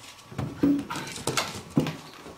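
A puppy scrambling across a hardwood floor with a container stuck over its head: a string of about five irregular knocks and taps as the container and its paws hit the floor and furniture.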